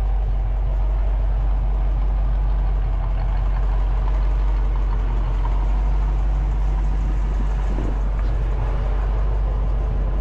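Ford 289 four-barrel V8 idling steadily through a Magnaflow dual exhaust, a constant low-pitched rumble.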